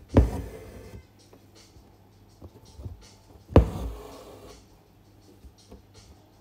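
Embroidery needle and six-strand cotton floss going through taut fabric twice, about three and a half seconds apart: each time a sharp tap followed by a short rasp as the thread is drawn through.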